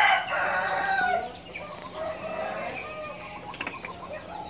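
A rooster crowing, the crow ending about a second in, followed by fainter chicken calls.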